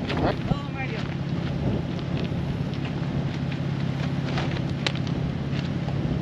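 Subaru's engine running steadily while the stuck car is coaxed over rocks on a dirt track, with wind buffeting the microphone.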